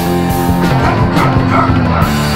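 Early-1980s heavy metal band recording: distorted electric guitar, bass and drums playing, with a wavering high melodic line entering about halfway through.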